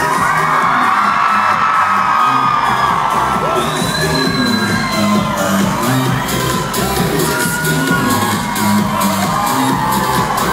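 Loud live pop music with a steady beat from a band on stage through the concert sound system, with the audience screaming and cheering over it; one long high scream stands out about four seconds in.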